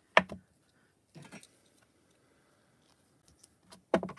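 Hard plastic clicks of a clear acrylic stamp block being handled on the desk: one sharp click about a quarter second in, then a few fainter clicks and taps, with small ticks near the end.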